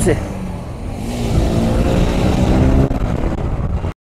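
Motorcycle engine accelerating, its pitch rising slowly as the bike overtakes, over the rush of wind noise from riding. The sound cuts off suddenly just before the end.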